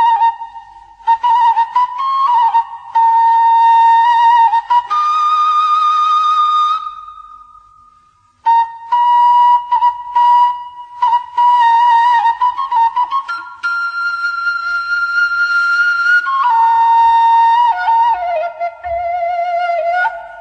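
Background music led by a flute playing a slow melody of held, wavering notes. It fades out about seven seconds in and starts again a moment later.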